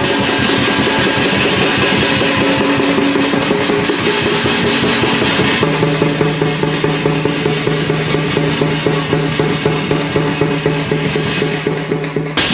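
Live folk drum ensemble: several barrel drums beaten with sticks together with hand drums and small percussion, playing a fast, dense rhythm. Steady held tones run underneath and shift to a lower pitch about halfway through.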